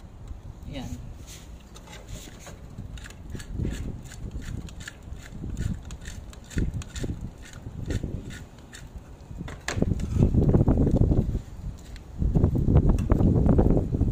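A metal spoon clicking and scraping against a non-stick frying pan as dried anchovies are stirred and tossed, in many small sharp strikes. In the second half the pan is handled with heavy low rumbling noise in two stretches, the loudest sound here.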